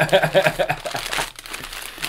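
Glossy gift wrapping crinkling as a present is unwrapped, with laughter in the first second.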